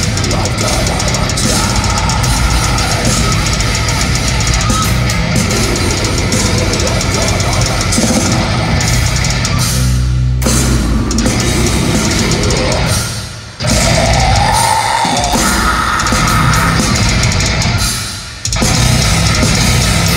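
A live progressive metalcore band at concert volume: distorted electric guitars, drum kit and a vocalist on microphone. The band drops out briefly twice, at about 13 and 18 seconds in, and comes straight back in each time.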